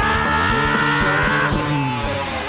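Live rock band playing a short instrumental passage between sung lines: electric guitar, bass and drums, with held chords over a steady beat. Near the end a low note slides downward and the cymbals drop out, leading into the chorus.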